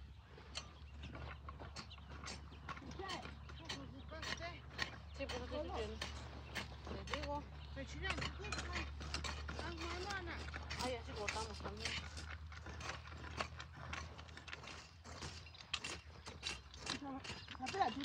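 Hand hoes chopping and scraping through dry soil as weeds are cut between rows of corn: a steady run of short scrapes and knocks. Faint voices carry in the background.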